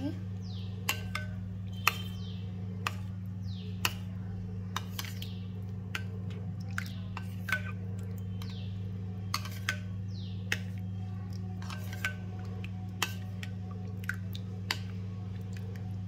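A spoon clinking against a ceramic bowl about once a second while stirring a thick curd mixture (lauki raita), over a steady low hum.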